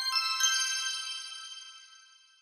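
Short musical logo sting of bright, chime-like bell tones: a few notes struck in quick succession, then ringing on and fading away by the end.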